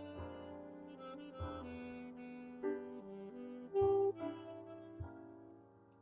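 Slow jazz ballad played by saxophone and grand piano, soft, sustained notes, fading quieter toward the end.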